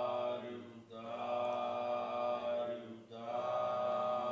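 A Buddhist monk chanting in a slow, held monotone, one male voice drawing out long syllables. The chant breaks for breath about a second in and again about three seconds in.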